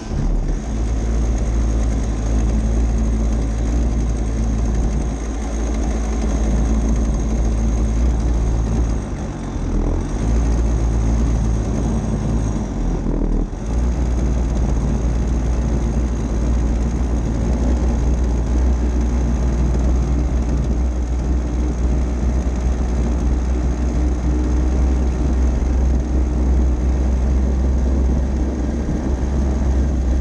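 Racing go-kart's small engine running under load on track, recorded from on board, with short dips about nine and thirteen seconds in.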